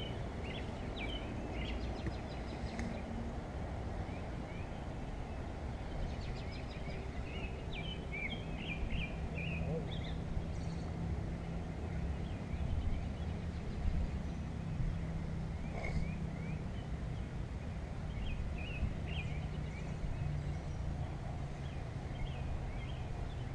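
Small birds chirping in short clusters of brief calls over a steady low rumble of outdoor background noise, with a low hum through the middle.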